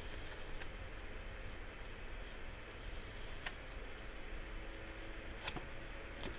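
Quiet room hum with a few faint, scattered clicks from handling and turning the pages of a paperback manga volume.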